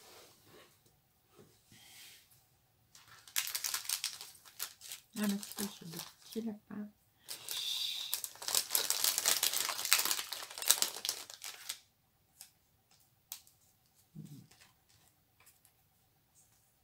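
Thin clear plastic sachet crinkling loudly as it is handled and opened to get at the die-cut paper embellishments inside, in two stretches of a few seconds each, from about three seconds in and again from about seven to twelve seconds.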